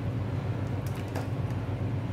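A steady low mechanical hum, with a few faint light clicks about a second in.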